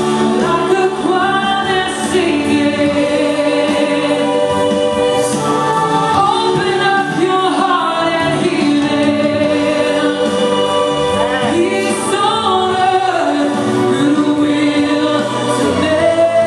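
Three girls singing a song together into handheld microphones, their voices held in long sustained notes.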